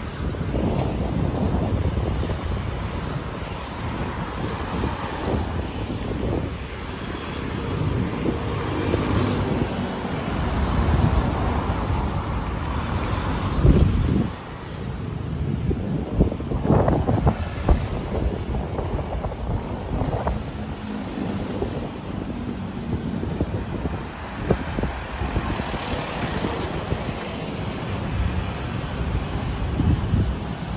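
Traffic on a multi-lane city street, cars and vans passing with a few louder swells, under wind rumbling on the microphone.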